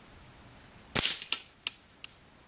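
A .177 air rifle shot striking the kill zone of a steel squirrel knockdown target: one loud sharp crack with a short metallic ring about a second in, then two quicker metallic clacks as the target's paddle mechanism trips.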